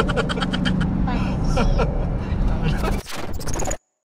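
Car cabin sound on the move: a steady engine and road hum with a voice over it. About three seconds in it is cut short by a brief swooshing transition effect, which drops into a moment of silence.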